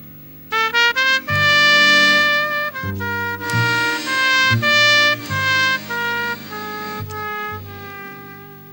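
Jazz trumpet solo over a low accompaniment of accordion and double bass. About half a second in, a quick rising run of short notes leads into a loud phrase of held and moving notes, which eases off near the end.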